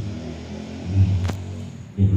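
A short pause in a man's talk through a microphone: a brief, low murmur of voice about a second in, then one sharp click.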